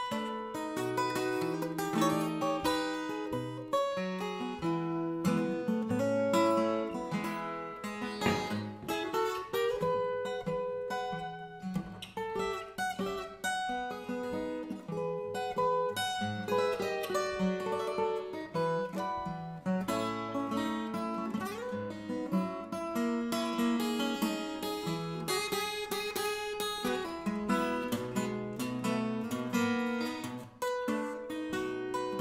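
Solo steel-string acoustic guitar playing an instrumental blues fingerstyle with a thumb pick, bass notes under a picked melody, with a few sliding notes.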